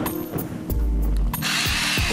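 Hand-twisted salt grinder grinding salt onto fish, a gritty rasp strongest in the second half, over background music.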